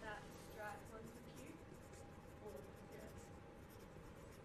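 Faint scratching of a pencil writing on paper, with a distant voice speaking quietly during the first second.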